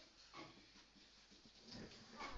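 Near silence: faint room tone with a few soft strokes of a marker writing on a whiteboard.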